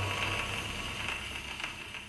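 Wind-up gramophone playing a shellac record as the last of the piano music fades out, leaving the record's surface hiss and crackle with a few faint clicks, dying away steadily.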